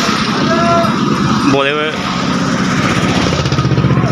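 An engine running steadily close by, its low rumble beating in a rapid, even pulse, with a short shout over it about a second and a half in.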